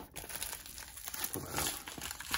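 Padded mailer envelope crinkling and rustling as it is handled and a taped cardboard card holder is pulled out of it, a little louder about one and a half seconds in.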